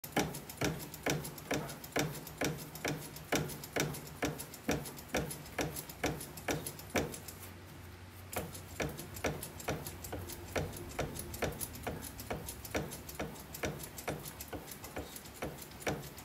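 Bat-rolling machine clicking in a steady rhythm, about two clicks a second, as a composite baseball bat is worked through its rollers by hand to break it in, over a low steady hum. The clicking stops briefly about halfway, then resumes a little faster and fainter.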